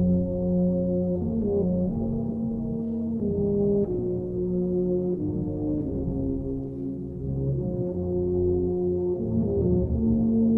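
Brass band playing a euphonium medley: slow, mellow low-brass chords, long held notes that change every second or two.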